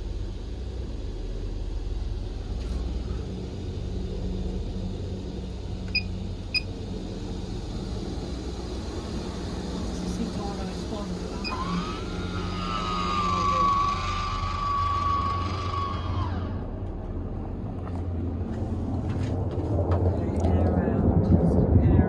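MaxxAir roof vent fan running with a steady low hum. Two light clicks come about six seconds in. Around the middle a whine rises, holds steady for about five seconds, then stops.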